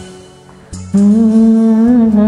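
A man hums one long, steady note that starts about a second in, after the music before it dies away.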